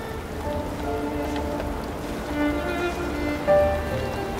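Gentle instrumental background music of short, held melodic notes over a steady rain sound, with a brief louder swell about three and a half seconds in.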